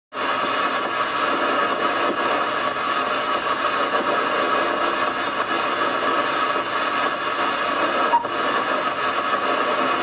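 Steady hissing static with faint humming tones running through it, unbroken apart from a brief dip about eight seconds in.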